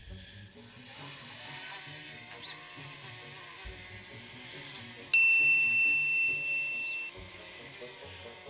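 DJI Mini 2 quadcopter, flying with one propeller cut to half its length, hovering with a low steady motor-and-propeller drone. About five seconds in, a bright ringing ding sounds for about two seconds and cuts off sharply. This is an added success chime.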